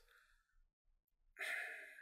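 Near silence for over a second, then a man's short breath, a sigh-like in-breath, about a second and a half in.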